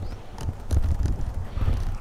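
Wind buffeting the microphone in an uneven low rumble, with a few faint knocks.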